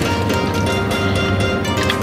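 Background music: a steady instrumental bed of sustained notes, with no speech over it.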